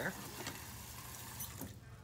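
Tap water running steadily from a faucet into a large jar, then cut off about a second and a half in.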